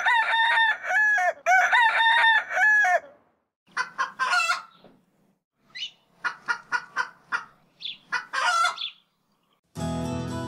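Chickens calling: two long, rapidly pulsing calls over the first three seconds, then a string of short clucks with pauses between them.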